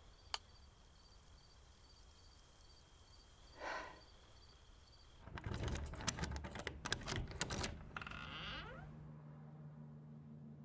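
A sharp click early on, faint insect chirping, then a rapid run of metallic clicks and rattles like a lock and door handle being worked, ending in a short creak as a door swings open.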